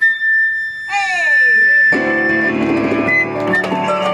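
Flute holding one long high note, joined about a second in by a swooping sound that slides down and back up in pitch, then electronic keyboard accompaniment with full chords entering about two seconds in.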